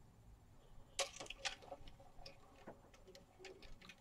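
Faint scattered clicks and taps of handling as a violin and bow are brought up into playing position, the sharpest click about a second in.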